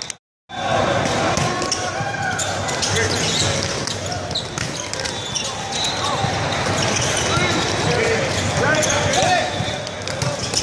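Indoor volleyball rally in a large echoing hall: sharp ball contacts and sneaker squeaks on the court over a steady din of players' and spectators' voices. The sound drops out for about half a second near the start where the recording cuts.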